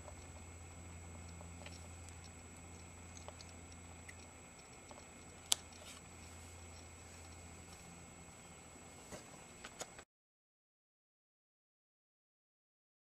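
Quiet room tone with a steady low electrical hum. A single sharp click comes about halfway through, a few light clicks follow near the end, and then the sound cuts out completely.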